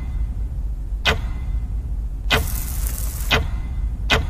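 Drama-trailer sound design: a steady low rumble with a sharp hit about a second in and another past three seconds, and a short hissing whoosh between them.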